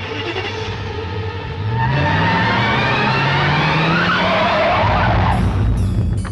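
Car engine revving up, its pitch climbing steadily, with tyres squealing about four seconds in.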